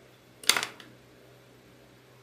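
A single sharp click about half a second in, over a faint steady hum.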